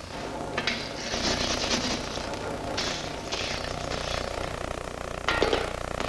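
Power hammer beating a sheet-metal helmet blank: a fast, continuous metallic chatter of blows over a steady motor hum, building up about a second in and running until near the end.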